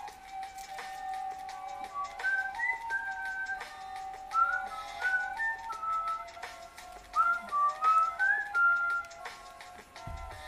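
A whistled tune of rising and falling notes, some slid into from below, over background music with long held chords. The tune starts about two seconds in and stops about a second before the end.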